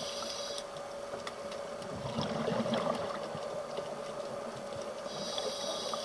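Underwater sound of a scuba diver breathing through a regulator. A short inhalation hiss comes near the start and again near the end, and a rumble of exhaled bubbles comes about two seconds in. Under it run a steady faint hum and scattered small clicks.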